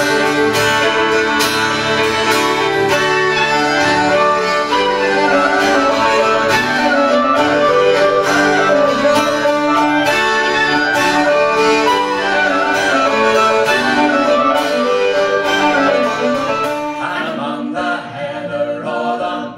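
Live folk band instrumental: fiddle, melodeon and a wind instrument carrying a lively tune over a strummed acoustic guitar beat. The ensemble thins out just before the end.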